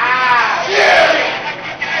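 Several young men shouting and hollering together in a small room: one long shout falls in pitch at the start, and another loud shout comes about a second in.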